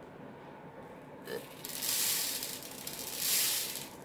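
Red seed beads poured from a small plastic container into a plastic bead tray: a click about a second in, then a hissing rattle of the beads that swells twice.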